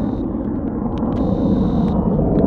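Steady rumble of a military jet's engines on the runway, with a faint steady high whine over it.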